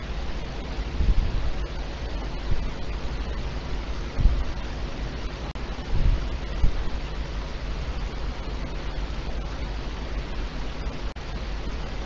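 Steady hiss of an open voice-chat microphone line, with a few soft low thumps scattered through it.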